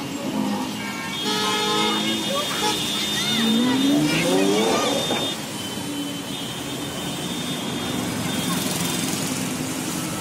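Busy city street traffic with car horns honking in long blasts, over engines and the voices of a crowd. A pitch rises through the middle.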